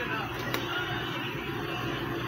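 NASCAR race broadcast playing through a television's speaker, heard in the room: faint commentary mixed with the steady noise of race cars on track.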